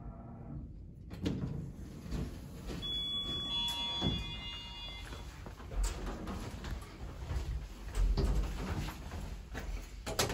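Montgomery KONE elevator's sliding doors moving, with knocks, and a brief ringing tone about three seconds in that fades within a couple of seconds.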